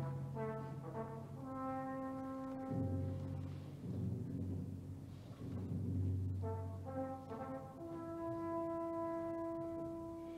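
Opera orchestra playing, with brass chords held over a low rumble. The chords come in two swells: the first near the start, the second about six seconds in.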